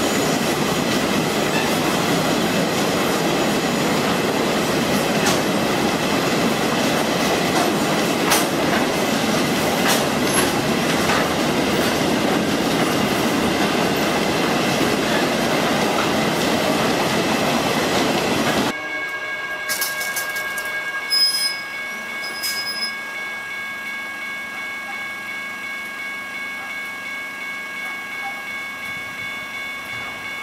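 Freight train hopper wagons rolling past at close range: a steady, loud rumble and rattle of wheels and running gear, with a few sharp clicks over the rail joints. About two-thirds of the way through it cuts off abruptly, leaving a much quieter scene with thin steady high tones and a brief knock.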